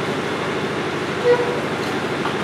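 Steady room noise in a lecture hall, an even hiss with nothing striking in it, and a short spoken "yeah" about a second in.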